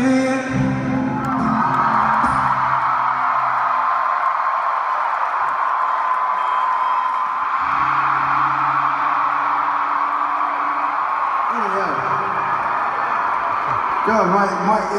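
Arena crowd cheering and screaming as a song ends, with a few low guitar notes held underneath partway through.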